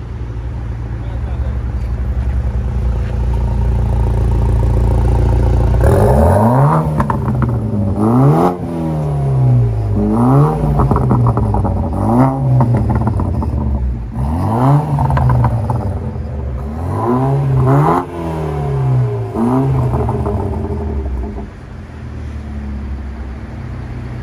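BMW Z4 roadster engine through its sports exhaust: idling for about six seconds, then revved in about eight quick blips, each rising and falling in pitch, before settling back to idle near the end.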